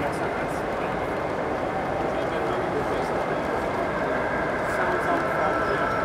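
Steady background murmur of many people talking at once in a crowded exhibition hall.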